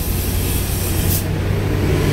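Road and engine noise inside a moving vehicle's cabin: a steady low rumble, with a high hiss that drops away a little over a second in.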